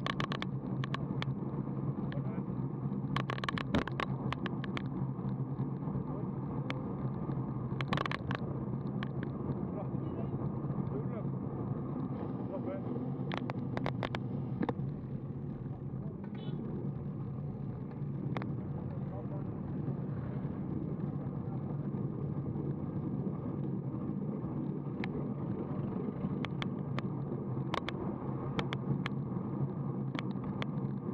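Wind rushing over an action camera's microphone and road-bike tyre noise while riding at about 30 km/h, with scattered sharp clicks and knocks from the bike and camera mount over the road surface. The rush eases briefly around the middle as the riders slow down.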